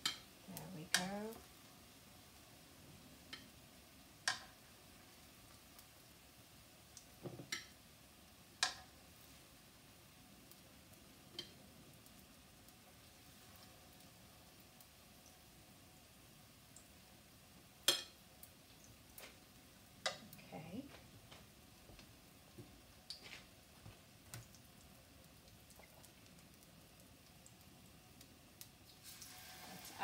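Banana fritters frying in hot oil with a faint steady sizzle. Scattered sharp clicks and knocks come from a metal utensil striking the pan and plate as the fried fritters are lifted out.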